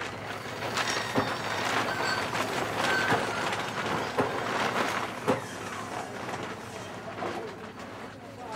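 Steady background noise with a few sharp knocks, about one, four and five seconds in.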